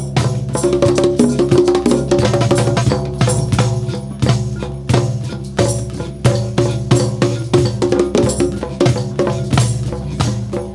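Amateur percussion ensemble playing a steady rhythm: hand drums such as congas and a cajón, with sticks striking, over sustained notes from guitar and other pitched instruments.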